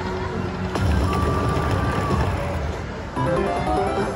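Electronic game music and chimes from an Aristocrat Lightning Link Tiki Fire slot machine. A new jingle starts just before one second in with a held tone, and another short burst of tones comes just after three seconds, as a small line win shows.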